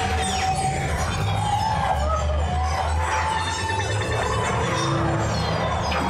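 Dramatic ride soundtrack music with swooping, sliding-pitch effects over a steady deep rumble, accompanying the ship's miniaturization and launch sequence in the motion simulator.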